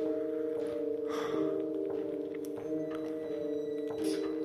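A steady, eerie drone of several held tones, unchanging throughout, with a faint rushing noise about a second in.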